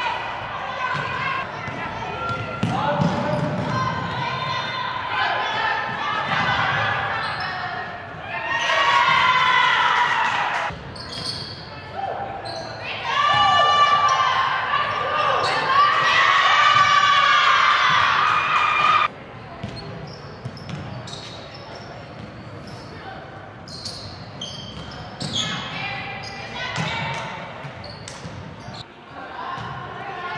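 Basketball game in a gym: a ball bouncing on the hardwood floor amid players' and spectators' shouting voices, echoing in the large hall. The level drops suddenly about two-thirds of the way through.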